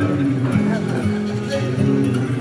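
Acoustic guitar played solo and picked in a steady pattern of notes, with a man's voice singing along into the microphone, heard live in a concert hall.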